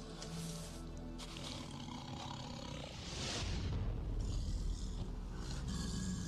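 Amur tiger growling deeply over its kill, a possessive warning to keep intruders away; the growl grows louder about halfway through. Documentary music plays underneath.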